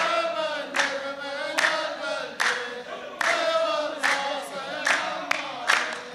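A row of men chanting a poem's verse together in chorus, with loud unison hand claps at a steady beat, about one clap every second or less.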